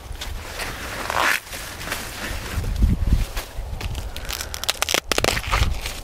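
Rustling and crackling of corn leaves and husk as an ear of sweet corn is grabbed and pulled off the stalk, with a quick run of sharp cracks about five seconds in.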